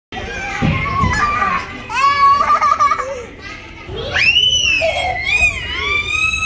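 Young children's voices calling out while playing, with high-pitched excited squeals about two-thirds of the way through.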